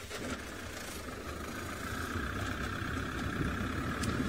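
Open safari vehicle's engine running as it drives, a steady low rumble with a steady higher whine above it, slowly getting louder.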